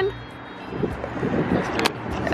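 Car cabin sound while parked: a low steady hum with some faint rustling, and one sharp click near the end.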